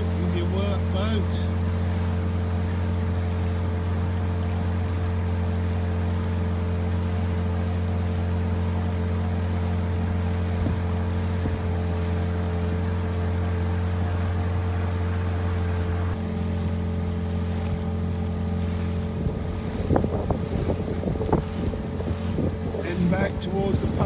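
Small outboard motor running at a steady speed, driving an inflatable boat across calm water. In the last few seconds wind buffets the microphone over the motor.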